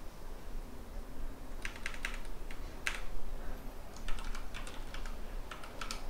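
Computer keyboard keys being typed: a quick run of keystrokes, a short pause, then a second longer run.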